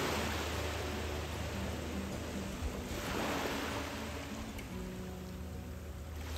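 Small waves washing onto a beach, the surf swelling about a second in and again around three seconds in, under soft background music.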